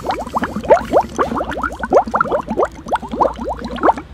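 A person gulping down a glass of orange juice close to the microphone: loud, rapid gurgling swallows, about six or seven a second, stopping just before the end.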